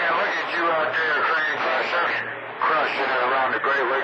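Operators' voices coming through a CB radio receiver on channel 28, picked up as long-distance skip. The talk sits over a steady layer of band noise.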